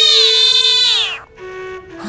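A loud, high-pitched cry held for about a second, then sliding steeply down in pitch and breaking off, over music with a steady held note.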